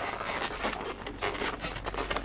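Inflated latex twisting balloons rubbing against each other in the hands as a thin 160 balloon is wrapped around a 260 balloon, giving a quick run of short, scratchy rubbing sounds.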